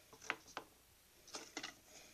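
Faint clicks and small squishing noises from fingers pressing and working a soft clay post onto a clay jug, in two short clusters about a second apart.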